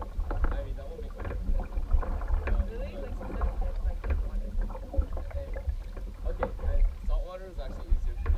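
Paddles of a two-person outrigger canoe stroking and splashing through the water, over a heavy low rumble on the hull-mounted microphone.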